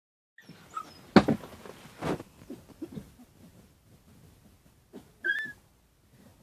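Central Asian Shepherd puppies whimpering: faint high squeaks near the start, and one short high-pitched whine about five seconds in. There are two loud rustling bursts about one and two seconds in.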